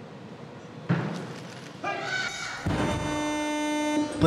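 A barbell loaded with bumper plates dropped to the platform after a missed snatch: one loud thud about a second in, followed by a short burst of voices. From about halfway through, music comes in with a steady held chord.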